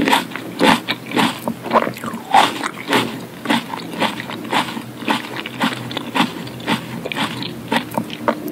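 Close-miked wet chewing and mouth clicks of someone eating cherry tomatoes, lips closed, about three or four clicks a second.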